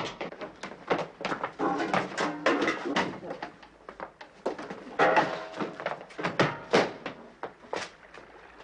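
Men fighting at close quarters: a rapid run of thumps, knocks and scuffles, with grunts and strained voices in between.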